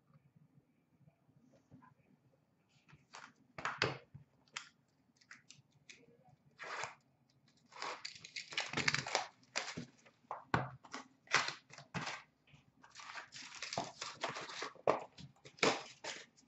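Upper Deck Ice hockey card pack wrappers being torn open and crinkled, starting a few seconds in as a string of short rustles, with two longer bursts of crinkling in the middle and near the end.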